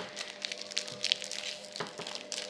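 A foil Match Attax football card packet crinkling and crackling in the hands as it is worked at to be torn open, with many small irregular crackles.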